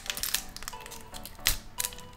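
Foil booster-pack wrapper crinkling as it is torn open by hand, with a few sharp crackles, the loudest about one and a half seconds in.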